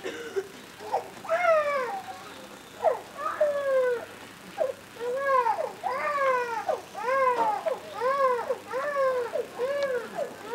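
An animal calling over and over, about one call a second, each call an arch that rises and then falls in pitch.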